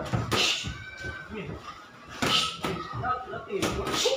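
Boxing gloves landing punches in a sparring exchange: several sharp smacks, the loudest right at the start and a little after two seconds in.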